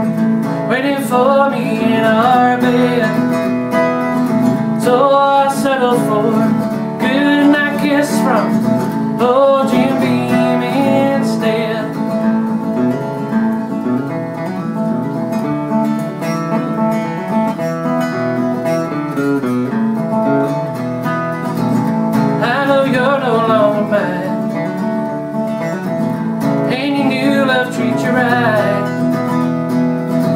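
A man singing to his own acoustic guitar. He sings in the first twelve seconds or so, then the guitar plays alone for about ten seconds, and the singing comes back about 22 seconds in.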